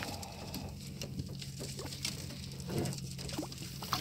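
Light handling noise, small irregular clicks and pattering, as a crappie is held over the side of a boat, then a splash near the end as it is dropped back into the water.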